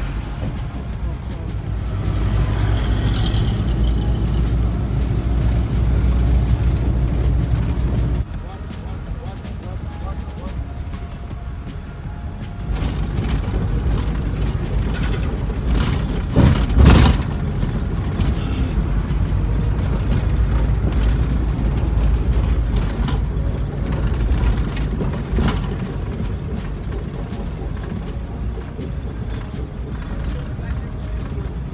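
Engine and road rumble inside a moving passenger bus, with a sudden drop in level about eight seconds in and a rise again near thirteen seconds. A short, loud knock comes about seventeen seconds in.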